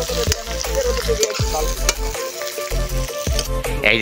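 Meat curry sizzling and bubbling in a large black wok over a fire, a steady frying hiss. Background music with a low beat runs underneath.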